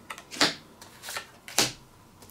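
Playing cards being dealt face down onto a table, each landing with a short crisp snap; several snaps, the two loudest about a second apart.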